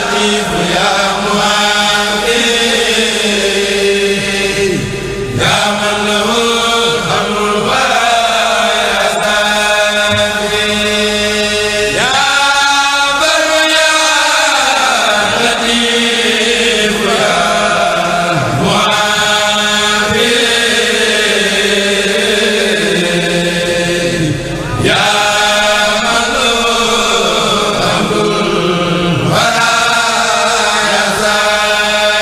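Group of male chanters (a kurel) chanting a Sufi qasida in Arabic into microphones. The melody comes in long held phrases with sliding pitch, breaking briefly about every six seconds.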